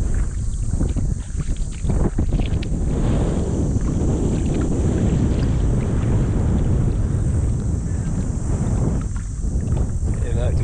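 Strong wind buffeting the camera microphone as a loud, steady rumble, with water swishing around the legs of someone wading in a shallow creek.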